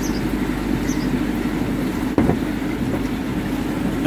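A steady low mechanical rumble, like an engine idling, with a single sharp knock about two seconds in.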